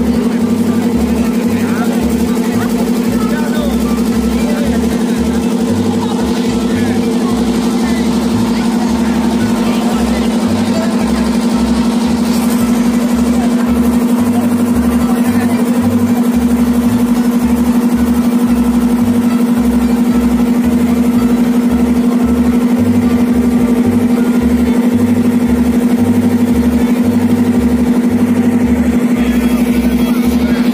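A wooden river ferry's engine running with a steady, even drone, a little louder from about halfway, with passengers' voices over it.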